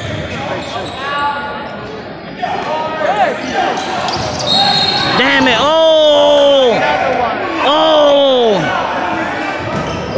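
A basketball game echoing in a large gym: the ball bouncing on the hardwood court under voices calling out, with two long drawn-out shouts in the second half.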